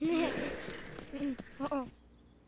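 Brief vocal sounds from cartoon characters, short murmurs and exclamations without words, over a rushing noise at the start that fades within about a second.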